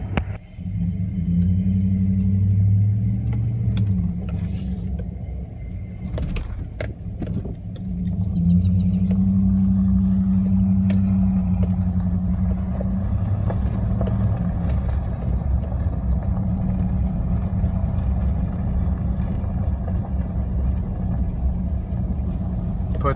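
Pickup truck's engine and drivetrain running at low speed, heard from inside the cab: a low steady drone that swells twice, about a second in and again around eight seconds in, as the truck pulls ahead. A few sharp clicks come around six seconds in.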